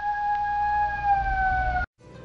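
A single long high-pitched held note that falls slightly in pitch and cuts off abruptly near the end.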